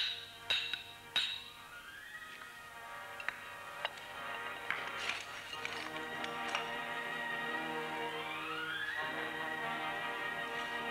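A hammer striking a piton in a rock crack: about three ringing blows in the first second or so. Background music follows, its tones slowly rising.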